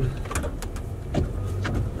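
Snow plow pickup truck's engine running, heard from inside the cab as a steady low rumble, with a few short clicks over it.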